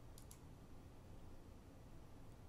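Near silence with two faint clicks in quick succession about a quarter second in: a computer mouse button being clicked.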